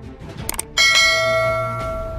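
Subscribe-animation sound effect: a quick click about half a second in, then a bright notification-bell ding that is the loudest sound and rings on for over a second as it fades.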